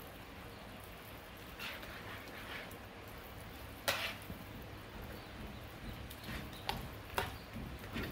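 Wire whisk working soaked bread through a wet custard mixture in a plastic bowl: faint wet squishing, with a sharp click of the whisk against the bowl about halfway through and two more near the end.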